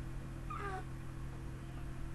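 A single short call falling in pitch, about half a second in, over a steady low hum.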